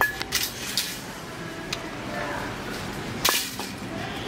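Supermarket background hum with faint distant voices, broken by a few sharp clicks and knocks. The loudest knock comes about three seconds in.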